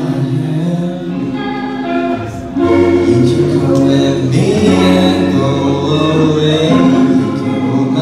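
Live band music: electric guitars and bass under several voices singing together in harmony. The music gets louder about two and a half seconds in.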